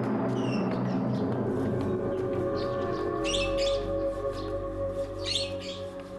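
A small caged bird chirping in three short spells over background music of long held notes.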